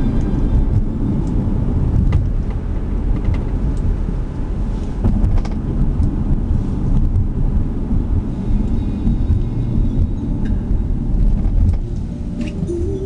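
Car interior noise while driving: a steady low rumble of tyres, engine and wind, with a few faint ticks.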